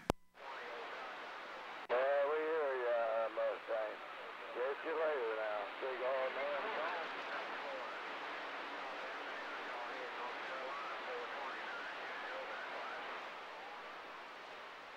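CB radio receiver static after a click at the start, with a faint, wavering voice of a distant station coming through the hiss for a few seconds. Then only static, slowly fading as the signal drops.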